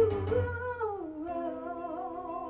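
A woman singing a long held, wordless note with vibrato into a microphone, sliding down in pitch about halfway through, over a backing track of held chords.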